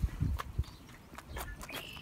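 Charolais heifer calf sucking and tugging on a person's fingers: soft sucking noises, with a few low thumps in the first half second and faint clicks throughout.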